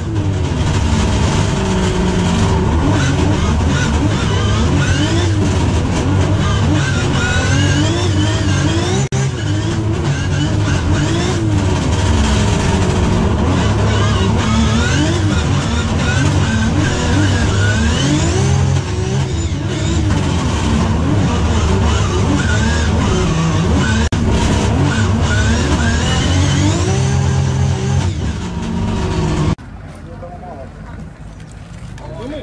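Drift car engine heard from inside the cabin, revving up and down over and over as the car is driven sideways, with tyres squealing. It cuts off suddenly near the end.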